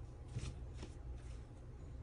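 A few soft, brief rustles over a steady low rumble.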